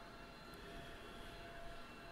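Faint room tone: a steady low hiss with a few faint steady tones.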